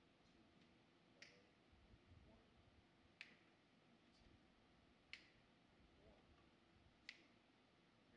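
Four faint finger snaps, evenly spaced about two seconds apart, over near-silent room tone: a slow count-off setting the tempo before the band comes in.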